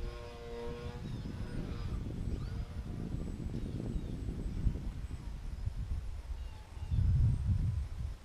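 Distant radio-controlled biplane's motor droning overhead, a steady tone that is clearest in the first second. Wind rumbles on the microphone throughout and gusts louder near the end.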